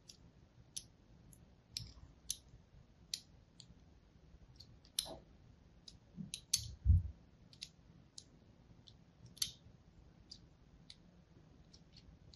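A thin blade scoring the surface of a bar of soap, each stroke giving a short, crisp click, irregularly spaced at roughly one or two a second. A dull low thump about seven seconds in is the loudest sound.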